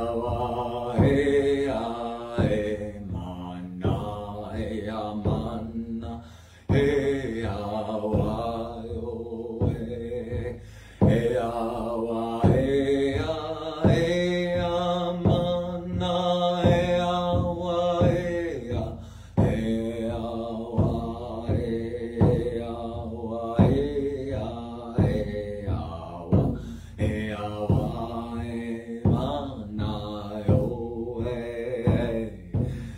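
A man chanting a repeating melody with long held notes while beating a hand-held hide frame drum with a beater in a steady pulse of about two strokes a second.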